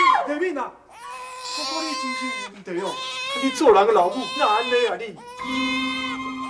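A young woman wailing and sobbing loudly in distress, with long drawn-out cries that waver in pitch, after a man's voice calls out at the start. Soft sustained background music comes in near the end.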